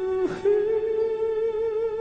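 Slow, sad ballad music: a lead melody held on long notes with vibrato over a soft accompaniment, moving up to a higher held note about a third of a second in.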